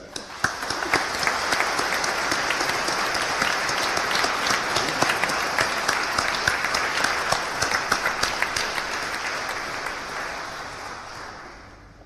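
A large audience applauding: the clapping swells within the first second, holds steady, then dies away over the last couple of seconds.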